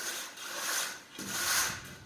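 A straightedge (screed rule) scraped across fresh, wet cement screed mortar to level it, in two scraping strokes.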